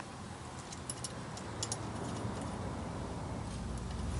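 A handful of faint metallic clicks in the first two seconds, from a socket ratchet and linkage hardware being worked, over a low steady background hum.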